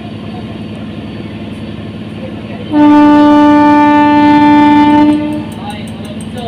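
A train horn sounds one loud, steady blast of about two and a half seconds, starting a little under three seconds in and then fading, over a steady low hum.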